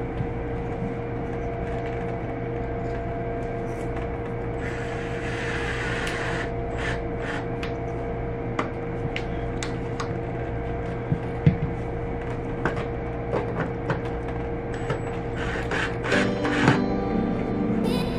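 Cordless drill work on an aluminium LED channel: scattered small clicks and taps of handling, and a short burst of hissing noise about five seconds in, over a steady hum. Soft background music comes in near the end.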